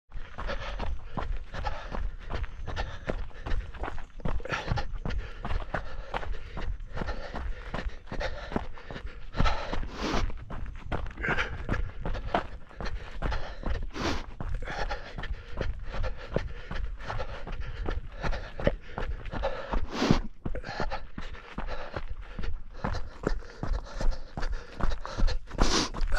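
Mountain bike descending fast over loose gravel singletrack: tyres crunching and the bike rattling and knocking over stones in a dense, irregular stream of clicks, with a constant low wind rumble on the microphone.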